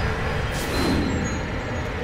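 A low, steady rumble from a dramatic soundtrack effect, with a brief whoosh about half a second in.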